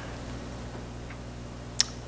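A pause in a man's speech: steady low electrical hum from the microphone and sound system, with one short, sharp click near the end.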